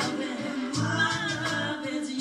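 A woman singing a slow melody with held, wavering notes over music with a low bass that pulses about every second and a half.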